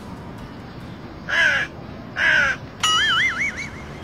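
Two loud, harsh crow caws about a second apart, followed by a wavering, warbling whistle-like tone lasting about a second.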